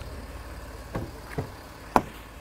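Thumps and knocks inside a Land Rover Discovery's cabin as doors are handled and someone climbs in: two softer thumps about halfway through and a sharp loud knock at the end, over a low steady rumble.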